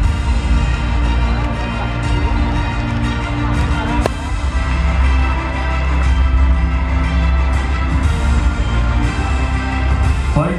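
Music with long held notes over a strong, deep bass.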